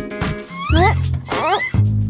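Cartoon background music under two short, rising, strained whimpers from an animated character struggling to work a phone with long nails, with a few light clicks.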